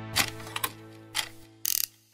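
Sound-effect clicks of a clock mechanism, a few sharp clicks at uneven spacing and a brief ratcheting burst near the end, over held music tones that fade away.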